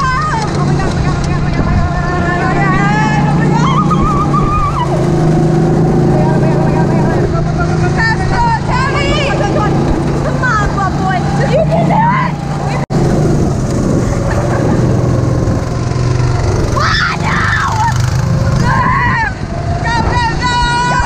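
A go-kart's small petrol engine running at a steady pitch, with girls riding in it shouting and laughing over the engine noise. The sound drops out for an instant about two-thirds of the way through.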